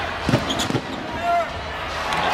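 A basketball bouncing twice on a hardwood court in quick succession near the start, over steady arena crowd noise.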